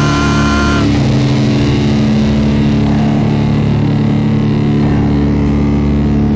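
Rock band's instrumental passage from a live rehearsal recorded on a tape recorder: heavily distorted electric guitar holding sustained, droning chords, shifting to a new chord about a second in, with no singing.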